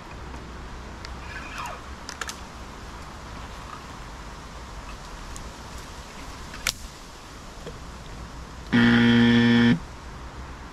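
A loud, flat buzzer tone lasting about a second near the end, starting and stopping abruptly. Before it there is a steady outdoor hiss with a few light clicks and one sharp click.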